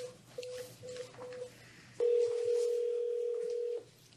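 Conference speakerphone keypad beeps as a number is dialed, four short beeps in the first second and a half. About two seconds in, a steady ringback tone sounds for nearly two seconds: the outgoing call ringing at the far end.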